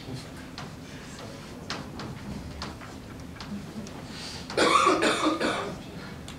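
A person coughing once, loudly, about four and a half seconds in, over faint scattered clicks in the room.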